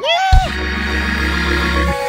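A keyboard chord with a deep bass note, held steadily from about a third of a second in, then moving to a higher note near the end. It opens with a short sung cry from the preacher.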